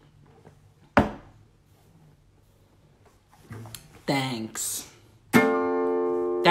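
A single sharp knock about a second in, then a man's voice briefly, and near the end an acoustic guitar chord strummed and left ringing.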